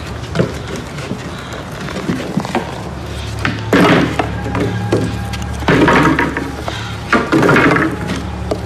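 Loose wooden floorboards being pried up by hand. In the second half there are three loud, noisy bursts as the boards scrape and knock against the floor, over a low steady drone.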